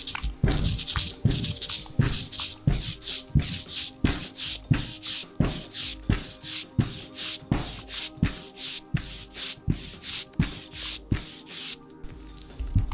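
Ink roller being rolled back and forth through thick printing ink on an inking slab: a rhythmic, hissing rub with each stroke, about two strokes a second.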